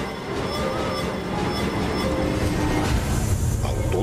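Dramatic theme music for a TV show's opening titles: held tones over a dense, noisy swell that grows louder toward the end.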